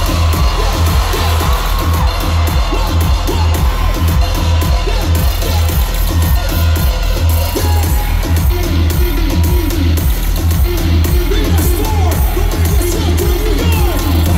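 Live reggaeton concert music played loud over an arena sound system, driven by a heavy, steady bass beat, with the crowd faintly audible beneath it.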